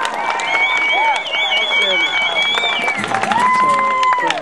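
A small audience clapping, with a long high-pitched wavering whoop over the claps and another voice calling out near the end.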